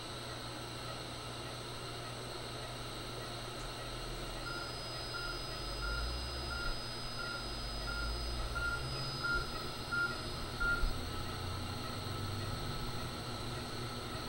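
C-arm fluoroscope sounding its X-ray exposure warning: short, even beeps at about two a second with a thin steady high tone, lasting about six seconds in the middle, over a low machine rumble and steady equipment hum. The beeping marks live fluoroscopy imaging while the spinal needle is guided.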